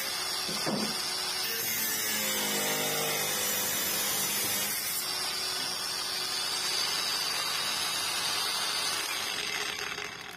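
Nagawa NCG100 cordless angle grinder running at its top speed of about 7,100 rpm, its disc cutting through thin galvanized steel tube with a steady sound. The sound dies away near the end.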